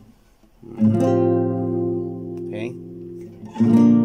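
Nylon-string classical guitar with a capo: a chord strummed a little under a second in and left to ring, then a second chord strummed near the end.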